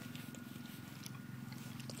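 Radio-controlled model boat's motor running steadily, heard from the bank as a low, even buzz.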